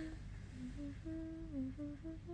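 A woman humming a tune quietly, a string of short notes stepping up and down in pitch.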